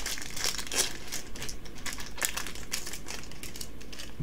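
A Yu-Gi-Oh! Legendary Duelists foil booster pack wrapper crinkling and tearing as it is pulled open by hand: a rapid run of sharp crackles that dies away near the end.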